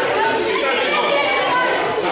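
Overlapping chatter of many voices at once in a large sports hall, with no single speaker standing out.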